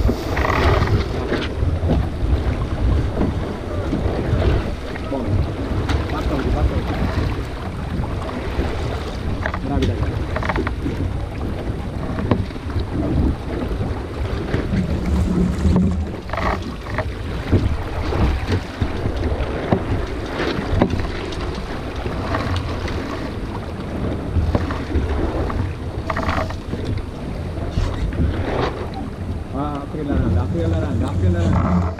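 Wind buffeting the microphone and water rushing and slapping along the hull of a small sailboat under way. There are short splashes now and then over a steady low rumble.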